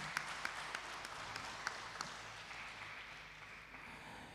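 Scattered audience applause, faint, with individual claps thinning out toward the end.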